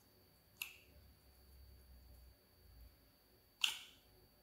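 Clear slime being kneaded by hand in a glass bowl, giving two sharp clicking pops: one just over half a second in and a louder one near the end.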